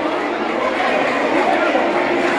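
Crowd of futsal spectators and players talking and calling out at once: many overlapping voices at a steady level.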